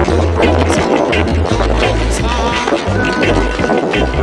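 Background music: an upbeat song with a bass line and a steady drum beat.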